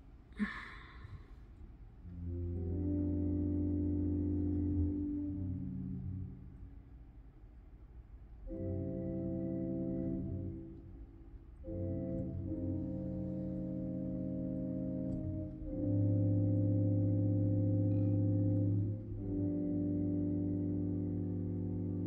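Digital church organ playing slow sustained chords, each held for a few seconds, with short breaks between them.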